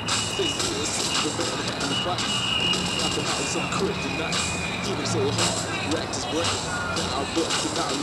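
A song with sung vocals playing through a portable cassette boombox's speakers, heard in the open over a steady low background hum.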